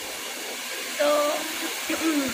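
Steady, even rushing noise, with a single short spoken word about a second in.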